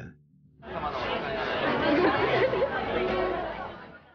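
Crowd of shoppers chattering, many voices talking at once. It fades in about half a second in and fades out near the end.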